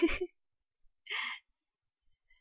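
A person's single short breath out, about a second in, after the tail of a spoken word.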